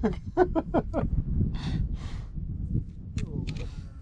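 A man laughing: a quick run of laughs in the first second, then breathier laughter. A steady low rumble runs underneath.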